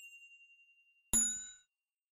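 A high ringing ding fades away slowly. About a second in, a second bright, bell-like ding with several ringing tones dies out within half a second.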